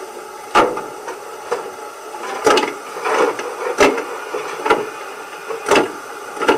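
Coal-shovelling sound effect from the onboard sound decoder of a 1:32 Gauge 1 brass model steam locomotive, played through its loudspeaker: a run of separate shovel scrapes, about one a second.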